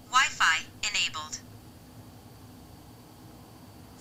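VIOFO A119 Mini 2 dash cam's built-in speaker playing a short, thin-sounding synthesized voice prompt for about a second and a half, answering the spoken "Turn on Wi-Fi" command. After it there is only faint room tone.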